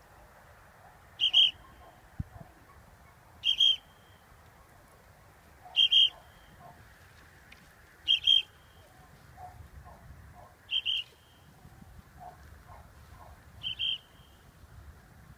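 A falconer's whistle: six sharp, high double blasts, about one every two seconds, typical of a falconer calling the falcon in to the swung lure.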